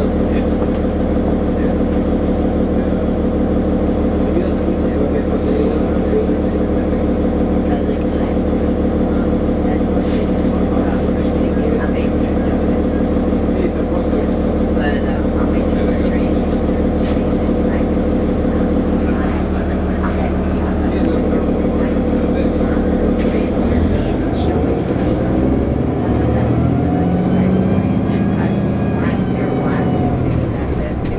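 Inside a 2009 New Flyer D40LFR city bus, its Cummins ISL diesel engine idling with a steady low hum while the bus stands still. Near the end the engine note rises in pitch as the bus pulls away.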